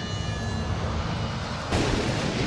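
Film-trailer sound design: a low rumbling drone with faint high tones that fade, then a sudden loud burst of noise, like a blast or crash, near the end.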